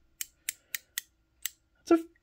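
Fine-tooth quarter-inch-drive Craftsman ratchet clicking as its handle is swung back against the pawl: five quick, light ticks over about a second and a half.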